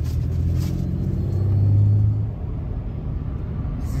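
Pickup truck engine and road noise heard from inside the cab while driving: a low drone that grows louder for about two seconds as the truck pulls away, then drops off.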